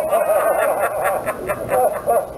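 A man laughing hard in a run of short, quick, high-pitched bursts.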